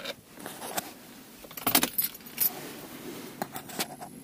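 USB cable plugs being pushed into a console-mounted USB charging socket: a series of short plastic clicks and light rattles as the plugs seat and the cables knock about, the clearest clicks nearly halfway through.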